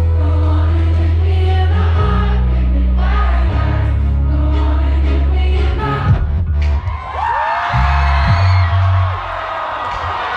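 Live pop song with long, deep held bass notes under singing, ending about six seconds in; the audience then cheers and whoops.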